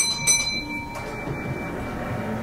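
A bell-like chime rings twice in quick succession inside a train's driving cab, then dies away over about a second and a half.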